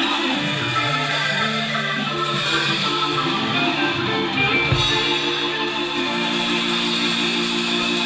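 Live band music without vocals: a Hammond New B-3 Portable organ playing long held chords, with electric guitar.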